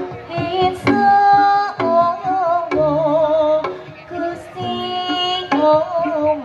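Amplified Javanese Jaranan music: a woman sings a wavering, ornamented melody over sharp strokes of a kendang barrel drum.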